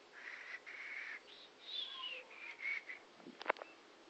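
A few short, high whistle-like notes and one falling note, then a couple of sharp knocks near the end.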